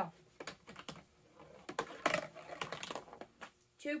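A small marble rolling down the lowest ramp of a cardboard-tube marble run: a string of light clicks and rattles for about three seconds, ending shortly before the end.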